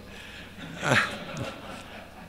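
A man's brief hesitant 'uh' into a lectern microphone about a second in, falling in pitch. Around it is room tone.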